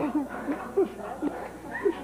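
Short bursts of laughter and chuckling: a string of brief rising-and-falling vocal yelps.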